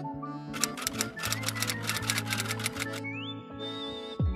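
Background music with a typewriter sound effect: a fast, even run of key clacks, about eight a second, from about half a second in until near the end, as title text types onto the screen.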